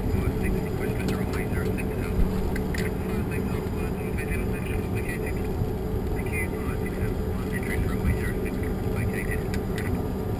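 Steady drone with a low hum in the cockpit of a Bombardier Challenger 605 business jet on the ground, with short, thin snatches of voice coming and going.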